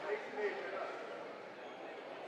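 Indistinct voices calling out over a steady background of arena crowd noise, loudest in the first half-second.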